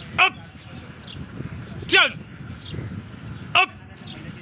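A man shouting short, sharp drill calls in a steady cadence, three loud calls about 1.7 s apart, each dropping in pitch, pacing trainees through pull-ups on a bar.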